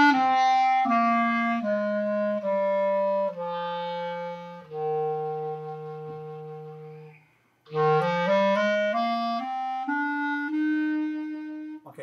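Clarinet played slowly in steps: a scale going down note by note to a low note held for about two and a half seconds, a short break for breath, then the scale climbing back up to a held note near the end.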